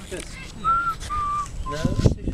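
A person whistling three short, clear notes, each a little lower than the one before.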